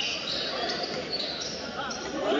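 Basketball game sounds in a packed gym: a crowd's mixed voices echoing in the hall, with the sounds of play on the hardwood-style court.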